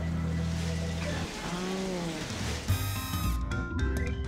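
Steady sizzling hiss of cooking in a busy kitchen. About two-thirds of the way in, theme music breaks in with a bright chord and carries on with a beat.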